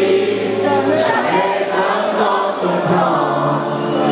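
Live concert music: a band playing on stage with several voices singing together.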